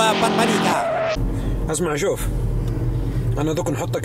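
A short musical sting, about a second long, over a logo transition, followed by the steady low engine and road rumble of a car's cabin with men's voices.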